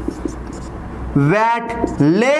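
Felt-tip marker writing on a whiteboard: faint scratching strokes and small taps, then about a second in a man speaks a word over it.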